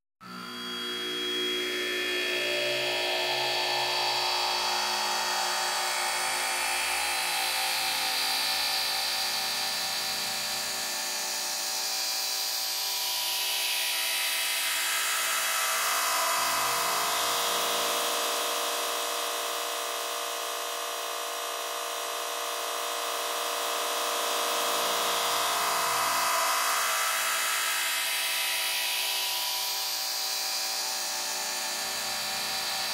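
Instrumental experimental electronic music: a dense, buzzing synth drone of many held tones starts suddenly out of silence, with low pulses underneath in the first third. Midway the sound slowly narrows and thins, the bass dropping away, then opens back out toward the end.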